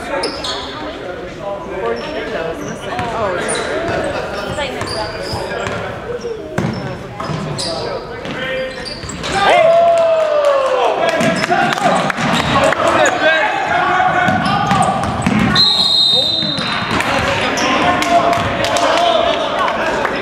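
Basketball bouncing on a hardwood gym floor amid indistinct shouts and chatter from players and spectators, echoing in the large hall. About three-quarters of the way through, a referee's whistle sounds once, a steady high tone lasting about a second.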